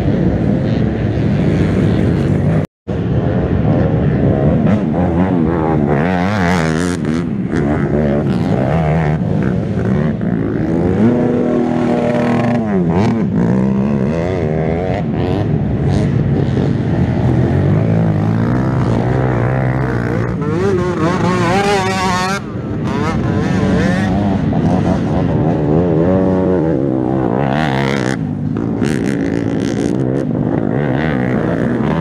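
Several youth racing ATV engines revving and shifting as the quads pass along the dirt track, their pitch repeatedly climbing and dropping, with more than one engine heard at once. The sound cuts out for an instant about three seconds in.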